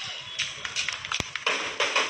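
Dinagyang tribal drum and percussion ensemble playing a fast, driving beat that grows denser and louder about one and a half seconds in, with a single sharp click just past a second.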